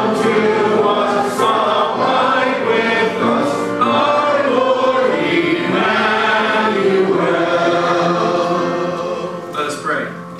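A church congregation singing a hymn together, many voices at once, with the last note dying away near the end.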